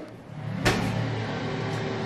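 A steady low hum runs throughout, with one sharp click about two-thirds of a second in.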